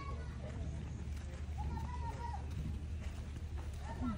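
Faint talking in the distance over a steady low rumble, with light footsteps on a dirt path.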